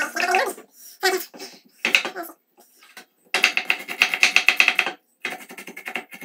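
Kitchen knife chopping vegetables on a wooden cutting board: scattered cuts at first, then a fast, even run of chops for just under two seconds, and slower chops after it.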